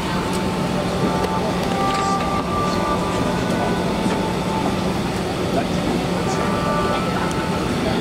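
Steady airliner cabin noise inside a parked Airbus A380: a constant low hum with a rush of air from the cabin ventilation, and passengers' voices in the background.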